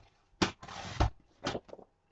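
Paper trimmer cutting card: a click as the cutting rail is set down, a short scrape as the blade slides across the card ending in a sharp click, then two lighter clicks.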